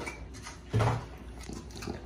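French bulldog eating kibble and wet food from its bowl, with small chewing and bowl clicks and one short, loud noise from the dog a little under a second in.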